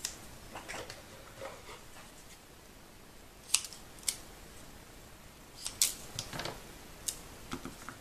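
Scissors snipping pieces of dimensional foam adhesive tape, amid handling of the tape roll and paper: soft rustling, then a few short, sharp snips, the loudest about six seconds in.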